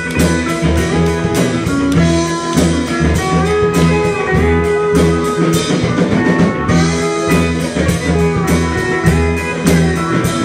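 Live rock band playing with electric guitar, bass and drum kit, the drums keeping a steady beat under bending guitar lines.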